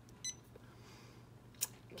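A short, faint beep from the Janome Memory Craft 550E embroidery machine's touch panel about a quarter second in, then a single sharp click near the end.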